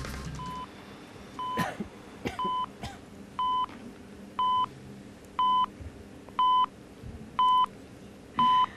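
Quiz-show countdown timer beeping once a second, eight short electronic tones counting down the time left to answer. The first few beeps are quieter, and the rest are at one steady level.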